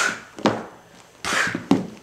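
Handling noises from dolls being moved by hand: a short rustle, a sharp knock about half a second in, then another rustle with a couple of knocks near the end.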